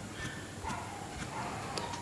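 Faint taps of a fingertip on a smartphone's touchscreen, typing on the on-screen keyboard.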